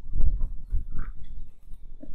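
Low, irregular rumbling and buffeting on the camera's microphone, starting abruptly and loudest in the first second.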